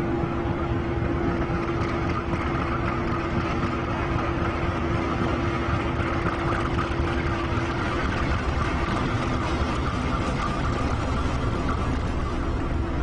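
Diesel locomotive running as it plows through deep snow: a steady engine rumble mixed with the noise of snow being pushed aside, with a steady hum that stops about two-thirds of the way through.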